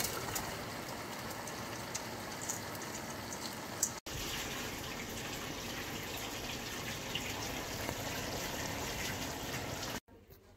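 Sliced sponge gourd cooking in a pot of tomato gravy over a gas burner, making a steady sizzling hiss with a few small pops. The sound drops out for an instant about four seconds in.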